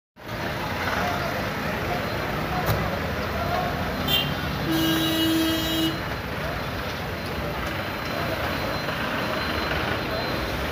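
Street traffic noise with a vehicle horn sounding once, a steady honk of a little over a second about halfway through, just after a short higher beep.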